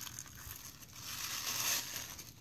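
Tissue paper crinkling and rustling as a leather flat is unwrapped from it, growing louder past the middle.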